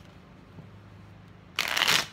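Deck of tarot cards shuffled by hand: quiet handling at first, then a short, loud rush of cards near the end.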